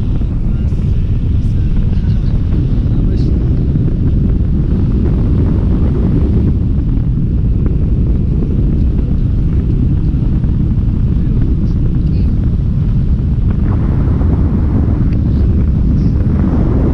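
Loud, steady low rumble of wind buffeting the microphone of a camera carried through the air by a tandem paraglider in flight.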